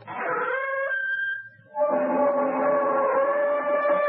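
Slow, drawn-out creaking of a door swinging open, a sound effect in an old radio drama: a wavering creak that breaks off for a moment about one and a half seconds in, then carries on as a long, louder creak.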